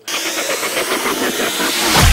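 Intro-animation sound effect: a sudden burst of hissing noise with a fast rattling texture that swells, ending in a falling whoosh that drops into a deep rumble.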